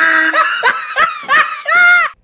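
A person laughing: a drawn-out vowel, then a run of short ha-ha bursts, ending on a held higher note.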